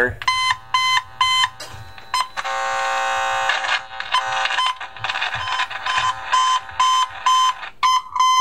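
Cable tone probe's speaker in broadband mode, sounding the tone generator's signal as even beeps about two and a half a second. A loud steady buzz from nearby electrical wiring swamps it for about a second in the middle, then stays under the beeps: unfiltered, the probe picks up hum along with the tone.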